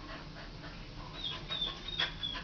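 Chow dog whining: a run of short, thin, high-pitched whines starting about a second in.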